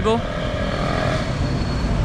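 Road traffic going by on a busy city street, a motorcycle engine among it, over a steady low rumble.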